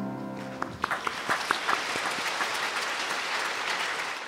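The last chord of a choir and orchestra fades out, then the congregation applauds steadily.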